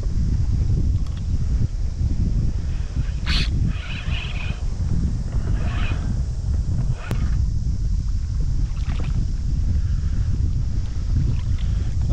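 Wind buffeting the microphone in a steady low rumble over a small boat on choppy water, with a few brief sharper sounds over it, the loudest a sharp one about three seconds in and a click about seven seconds in.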